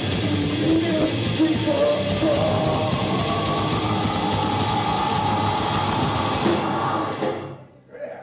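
Live all-female rock band playing loudly: electric guitar, bass guitar and drum kit, with a woman singing held notes. The song ends abruptly about seven seconds in.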